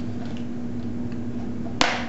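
A plastic clip snapping off a Potty Scotty WeeMan plastic child's urinal: one sharp snap near the end.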